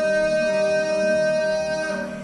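Acoustic trio of guitar, harp and cello playing, with one long note held steady over the accompaniment and ending at the close.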